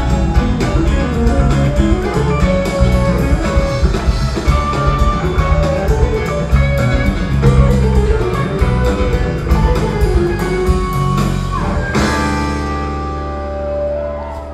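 Live rock band playing an instrumental passage: electric guitar over bass and drums. About twelve seconds in, the drums stop and a chord is left ringing.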